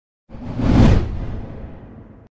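Logo-reveal whoosh sound effect with a deep rumble beneath it. It swells in about a third of a second in, peaks just before the one-second mark, then fades and cuts off abruptly near the end.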